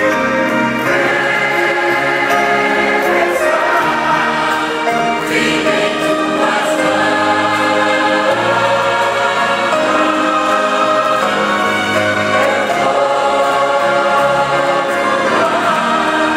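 A large mixed choir of women's and men's voices singing a gospel hymn, loud and full, in long held notes.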